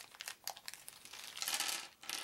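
Thin clear plastic parts bag crinkling in the fingers as it is pulled open, the crackling growing denser and loudest near the end as it tears apart.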